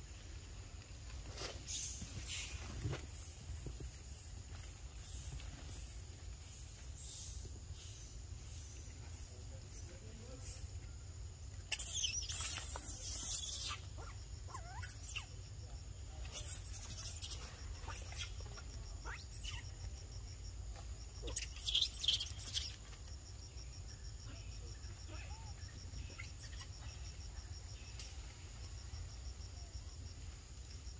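Macaques feeding and moving over dry leaf litter: scattered short crackles and rustles, with louder rustling bursts about twelve, seventeen and twenty-two seconds in. Under them runs a steady high insect drone.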